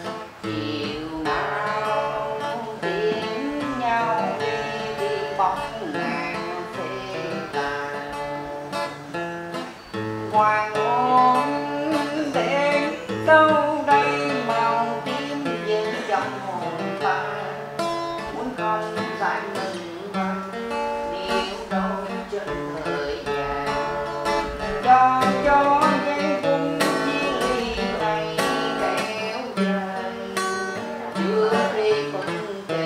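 A man singing a Vietnamese parody song to his own strummed acoustic guitar.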